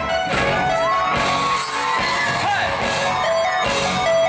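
Live pop-rock band playing a dance number on drum kit and electric guitars, loud and continuous.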